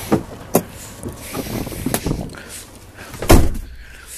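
Someone climbing the entry steps into a motorhome: a few sharp knocks and footfalls, then one loud, deep thump about three seconds in.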